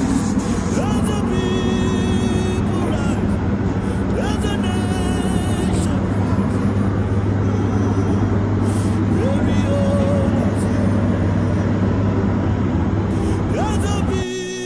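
A motor vehicle's engine running steadily, a constant low hum that stays level throughout, with faint voices and snatches of music over it.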